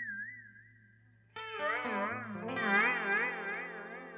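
Clean electric guitar through an Electro-Harmonix Polychorus in flanger mode: a ringing note with a quick, regular warbling sweep fades away, then a new chord is struck about a second and a half in and rings on, swept up and down by the flanger.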